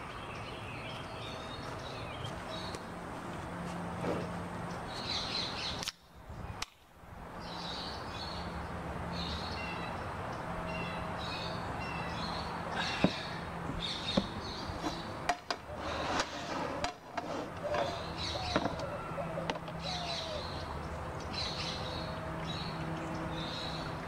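Small birds chirping in the background, with a few sharp clicks and knocks from a glass jar and its lid being handled, the loudest about halfway through and a short cluster soon after.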